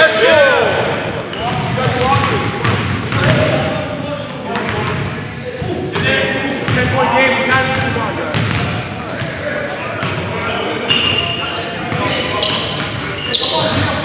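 Basketball game play in a gymnasium: the ball bouncing on the hardwood floor, short high sneaker squeaks, and players calling out to each other, all echoing in the large hall.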